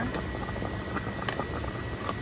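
Broth with meat bones and tomatoes boiling hard in a pan, a steady bubbling, with a metal ladle clicking against the pan a couple of times a little after a second in.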